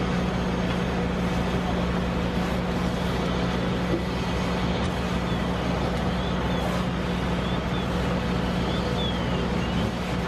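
Steady drone of a fire engine's engine and pump running at the fire, with the hiss of a hose line spraying water.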